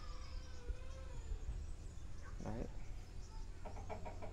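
Faint rural outdoor ambience with distant birds calling, including drawn-out calls in the first half, under a short spoken word about two and a half seconds in.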